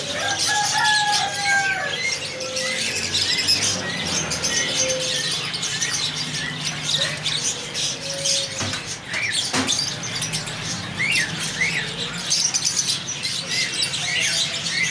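A flock of small cage birds, finches and lovebirds, chirping continuously in many quick overlapping calls. A steady low hum runs underneath, and two sharp knocks come just before the middle.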